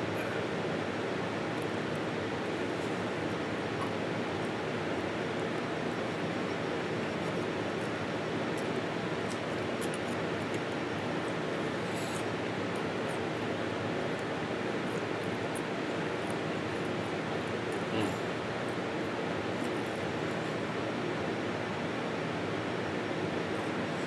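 Steady background noise, an even hiss at a moderate level, with a few faint small clicks about ten, twelve and eighteen seconds in.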